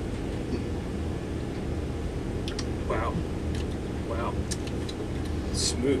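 A steady low room hum with a few faint clicks, and two short quiet vocal murmurs about three and four seconds in, as people drink.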